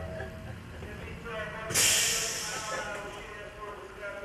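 People talking in the background, with a sudden loud hiss about two seconds in that fades away over about a second.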